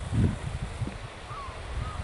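Wind buffeting the microphone in uneven gusts, strongest just after the start. A few faint, short, high bird calls come through in the second half.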